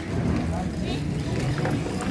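Indistinct voices of people in an outdoor market crowd, over a steady low drone.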